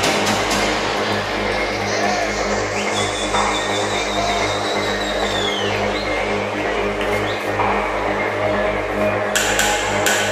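Electronic dance music from a live DJ set over a loud PA, with a steady deep bass line. A high synth tone sweeps up and holds for a few seconds in the middle, and crisp hi-hat ticks come back in near the end.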